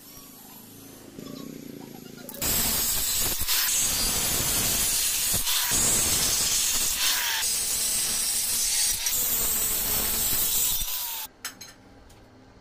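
Angle grinder with a thin cut-off disc cutting through stainless steel railing tube. A loud, harsh grinding with a motor whine starts about two seconds in, eases off briefly a few times as the disc works through, and stops suddenly shortly before the end.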